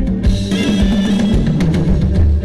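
A live band playing Thai ramwong dance music, the drum kit to the fore with a run of bass drum and snare strokes. The held melody notes drop out just after it begins, leaving drums and a bass line until the tune returns.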